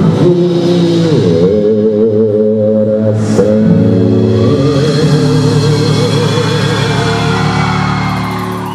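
Live sertanejo music: a male singer holds long notes with a wide vibrato over the band.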